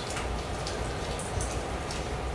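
Steady room noise in a pause between speech: a low hum and an even hiss, with a few faint ticks.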